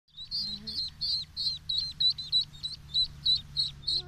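Eastern spot-billed duck ducklings peeping: a steady run of short, high peeps, about three or four a second, over a faint low rush of flowing water.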